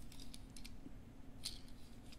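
Faint clicks and light scratching from a small die-cast Majorette toy car being handled and turned over in the fingers: a quick cluster of clicks at the start and one more after about a second and a half, over a low steady hum.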